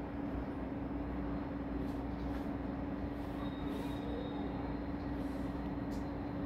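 A steady background hum: one held low tone over a faint, even hiss.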